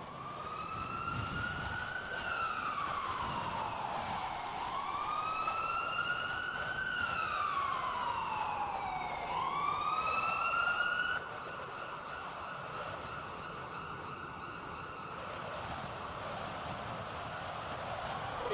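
Emergency-vehicle siren wailing, its pitch slowly rising and falling in long sweeps two and a half times, then cutting off suddenly about eleven seconds in. A steady rushing background noise remains afterwards.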